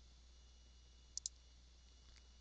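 A computer mouse double-clicked: two quick clicks about a second in, otherwise near silence.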